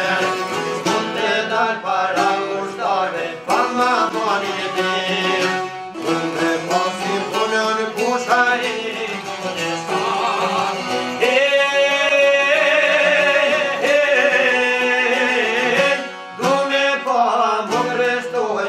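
Albanian folk song played live on çifteli and sharkia, the two long-necked lutes plucked together under a man's singing voice. A long held sung note comes in the second half.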